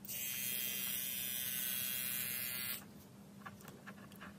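Small 12-volt DC motor running at full speed when powered from test leads, a steady high-pitched whine that starts at once and cuts off suddenly after under three seconds when the power is removed.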